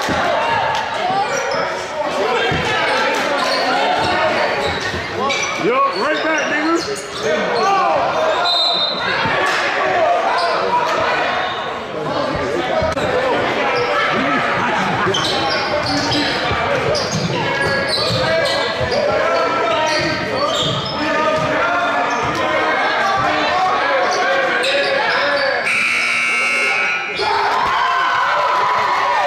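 A basketball being dribbled and bounced on a hardwood gym floor amid indistinct shouts and chatter from players and spectators, all echoing in a large hall. Near the end a buzzer sounds for about a second and a half.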